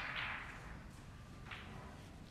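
Snooker balls and triangle being handled on the table cloth as the referee racks up for the next frame: a sharp swish at the start that fades over about half a second, and a shorter one about one and a half seconds in.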